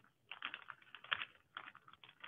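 Sheet of origami paper being folded and creased by hand, giving an irregular run of crisp crackles and rustles.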